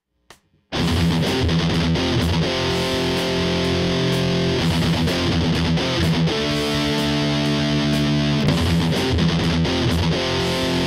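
Electric guitar played through a Korg Pandora PX5D multi-effects unit: a distorted metal rhythm with long held chords, over a drum-machine beat from the same unit. It starts abruptly just under a second in.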